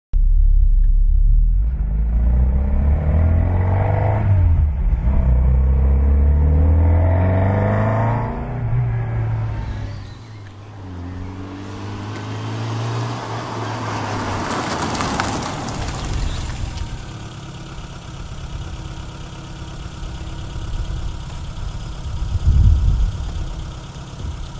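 Classic Mini Cooper Sport's four-cylinder engine running and revving as the car pulls away, pitch rising and falling through the gears, then a car passing on a gravel drive and the engine settling to a steady idle. A single loud thump comes near the end.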